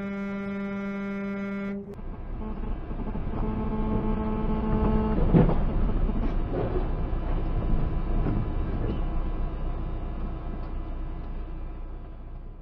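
A vehicle horn held as one steady tone for almost two seconds, cut off abruptly. Then comes steady road and engine noise with a second horn blast of about two seconds, ending in a sharp thump a little past the five-second mark.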